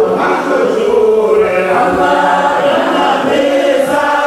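A group of voices singing together in a chant-like song, continuous and loud.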